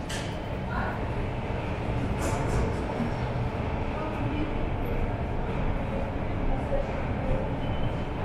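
Underground metro station ambience: a steady low rumble of a train running out of sight in the tunnels, with faint voices and a few footsteps on the stairs.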